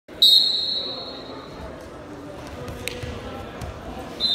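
A referee's whistle blast a fraction of a second in, a single shrill high tone that fades out in the large gym's echo. It is followed by low thuds and scuffing of wrestlers' feet and bodies on the mat as they grapple.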